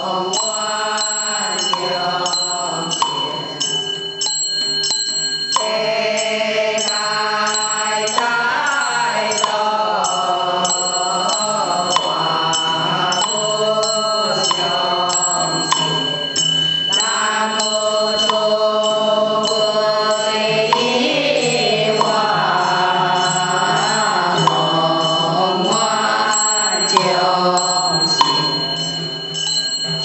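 A congregation chanting a scripture together in long, slowly gliding sung phrases, with faint small ticks through the chant.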